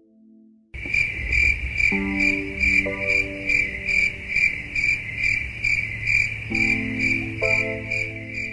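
Crickets chirping in an even pulsing rhythm, about two to three chirps a second, starting abruptly about a second in, over a low rumble.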